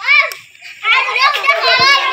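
Children's voices: one short high call at the start, then from about a second in several children talking and calling out over one another.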